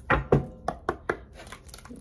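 An oracle card deck being shuffled by hand: two loud slaps of cards near the start, then a quicker run of lighter card snaps.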